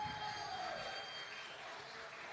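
Low room noise of a large hall, with faint distant voices.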